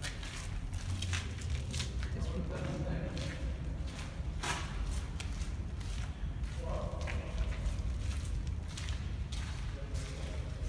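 Footsteps and knocks of camera handling while walking, over a steady low rumble, with faint voices talking about two and a half seconds in and again near seven seconds.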